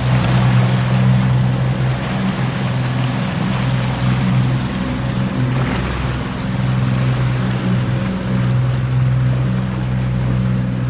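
Motorboat engine running at speed, a steady low drone, under the rush of wind and churning water from the boat's wake.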